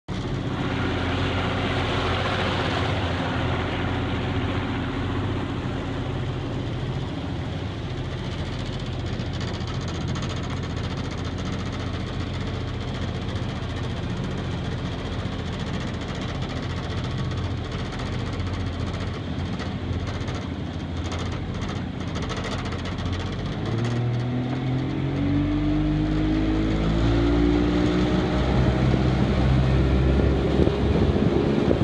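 Boat engine on a flat-bottom boat running steadily under way, then revving up from about three-quarters of the way through, its pitch rising and getting louder as the boat speeds up.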